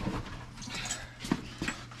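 A few light knocks and clinks, about three, from things being handled and moved on storage shelves, over a steady low hum.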